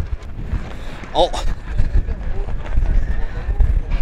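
Wind buffeting the microphone in an uneven low rumble, with a man exclaiming "Oh!" about a second in.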